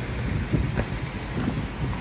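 Wind rumbling on the microphone over the steady rush of river water, with a few footsteps on loose stones.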